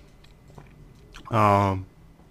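A man's voice holding one drawn-out vowel for about half a second, a hesitation sound between phrases of a spoken monologue, with faint clicks before it.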